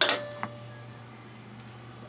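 Two clicks about half a second apart, the first with a short ringing tone: the boiler's control relays pulling in as its power is plugged in. A low steady hum runs under them.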